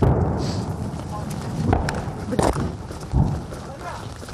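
Hurried footsteps through tall grass and brush with rustling vegetation and handling noise. There are a few heavier thumps, about a second and a half in, two and a half seconds in, and near three seconds.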